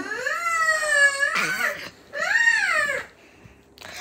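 A child's voice making two long, high-pitched wordless calls: the first drawn out for nearly two seconds, the second shorter, rising and then falling in pitch.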